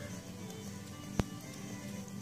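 Faint background music, with one sharp click a little past the middle.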